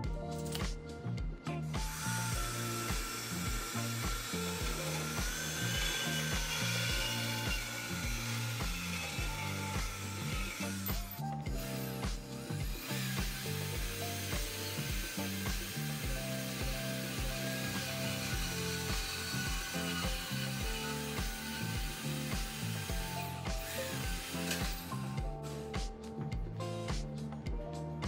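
Portable band saw cutting through 1-1/8 inch chromoly steel tube: a steady cutting noise with a faint wavering high whine, one cut of about nine seconds, a brief stop, then a second cut of about twelve seconds. Background music with a steady beat runs underneath.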